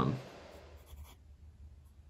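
TWSBI Diamond 580 fountain pen with a wet-writing medium nib, faintly scratching across paper in a few soft, short strokes as it writes.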